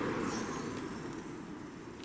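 Road traffic: a steady rushing noise that slowly fades away, with no distinct knock or click.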